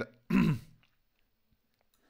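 A man's short voiced sound about half a second in, dropping in pitch, like a trailing hesitation noise, followed by near silence with a faint click.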